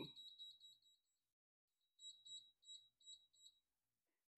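NuWave Brio air fryer's touch control panel giving a short, high electronic beep for each tap of the menu up-arrow as the setting is stepped up to 19. There is a quick run of faint beeps, a pause of about a second, then several more spaced beeps.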